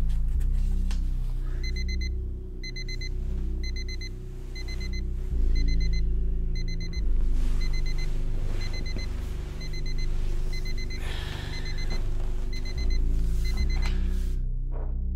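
Digital wristwatch alarm beeping in quick clusters about twice a second, starting a second and a half in and keeping on: the signal to take a pill. Low sustained music plays underneath.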